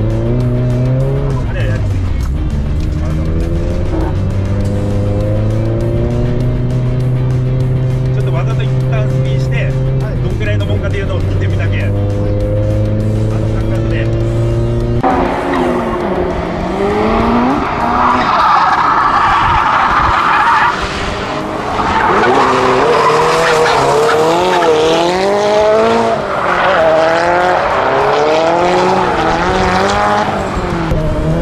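Car engine heard from inside the cabin, its pitch climbing and falling slowly with the throttle. About halfway through this gives way to the car heard from outside: engine revving and tyres squealing in wavering screeches as it drifts sideways through a bend.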